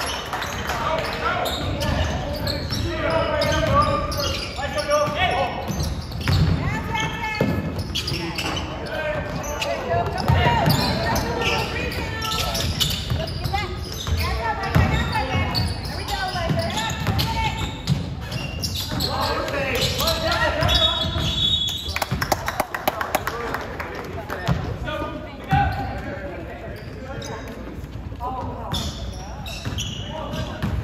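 Basketball being dribbled on a hardwood gym floor during play, with players' voices calling out across the court.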